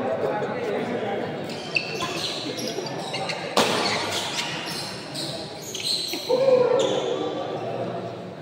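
Badminton rackets striking a shuttlecock in a fast doubles rally: a run of sharp cracks, with shoes squeaking on the court floor and echoing in a large hall. Spectators' voices run underneath, and a loud voice rises near the end.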